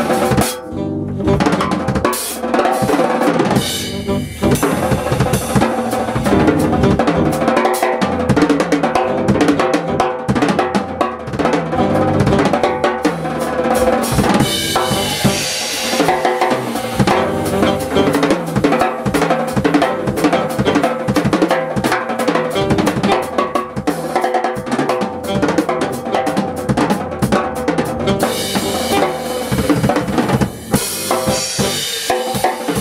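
Jazz drum kit played live in a busy, continuous pattern of drum and cymbal strokes, with steady pitched notes from the rest of the band held underneath.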